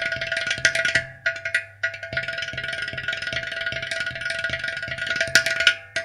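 Ghatam, a clay-pot drum, played with the hands in a rapid run of dry, sharp strokes over a steady held tone, with a few louder strokes near the end.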